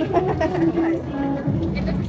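Voices talking over background music with some held notes, in a busy restaurant.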